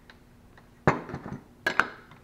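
Metal parts of a hydraulic dump valve clinking as they are handled and fitted back together by hand: one sharp clink about a second in, a few lighter taps, then two sharp clinks near the end.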